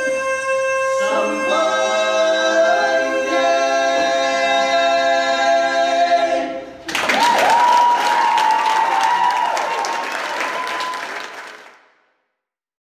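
A cappella barbershop quartet holding close-harmony chords, moving to the final chord about a second in and releasing it almost seven seconds in. Applause follows and fades out at the end.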